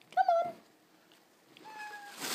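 A cat meowing twice: a short, loud meow just after the start and a longer, quieter one near the end.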